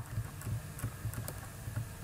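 Faint, irregular light clicking at a computer over a low steady hum.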